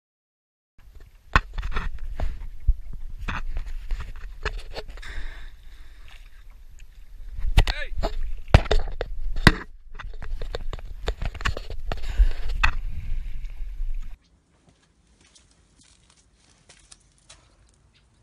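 People's voices over a steady low rumble, with sharp knocks now and then; it all cuts off suddenly about 14 seconds in, leaving only faint ticks.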